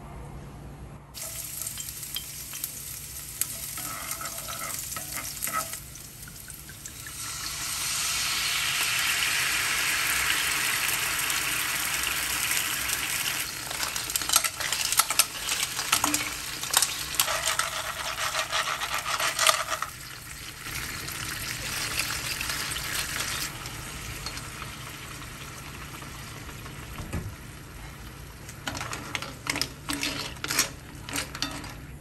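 Oil sizzling in a frying pan, growing louder about a quarter of the way in. Clams clink as they are spooned into the hot pan with a wooden spoon, and the sizzle dies down about two-thirds through.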